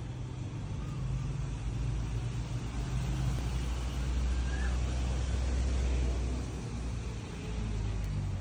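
Steady low rumble of outdoor background noise with a faint hiss above it, swelling a little in the middle and easing off near the end.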